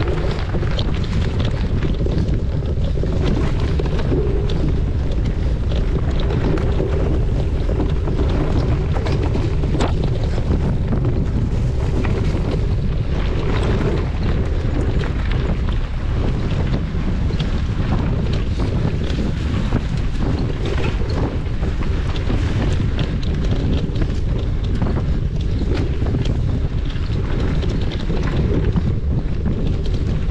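Wind buffeting the microphone of a camera on a moving mountain bike, over a steady low rumble from the tyres on a dirt forest trail. Short clicks and rattles from the bike come through irregularly.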